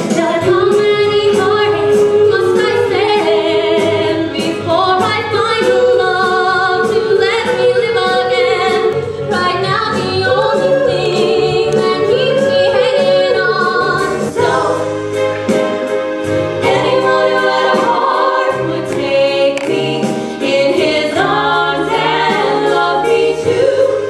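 A 1960s pop song from a stage musical: several voices sing in harmony over instrumental backing with a steady beat.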